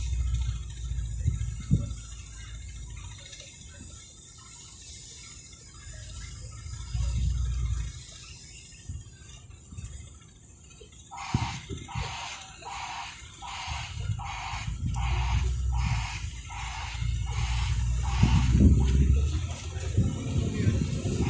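Wind buffeting the microphone in low gusts. From about halfway through, a rhythmic pulsing sound repeats about twice a second over it.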